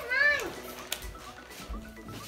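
A child's short voiced call in the first half second, then faint background music with a light click.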